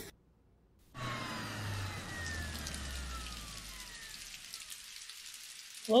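Sound effect of a time machine arriving: after about a second of dead silence, a low rumble with slowly falling whistling tones comes in and fades out over about four seconds, over steady rainfall.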